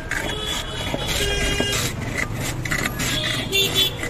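Block of ice scraped back and forth over the blade of a hand ice-gola shaving stand, in quick repeated strokes about three a second, as shaved ice falls into a steel tumbler. Vehicle horns honk twice, about a second in and near the end.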